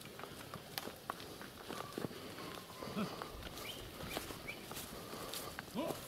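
Faint footsteps and hooves on a dirt road as a herd of cattle walks past, with scattered soft ticks and a brief low animal call about three seconds in.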